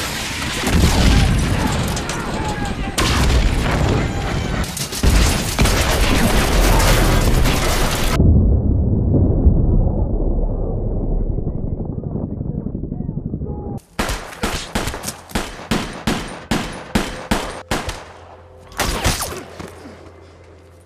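War-film soundtrack of a firefight. Dense, continuous gunfire comes first, then a muffled low rumble, then a string of single rifle shots about three a second near the end.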